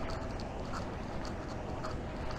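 Walking footsteps on a park path at a steady pace, about two steps a second.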